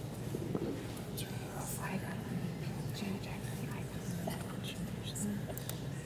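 Soft whispered or murmured talk over low room hum, with a few faint clicks and rustles.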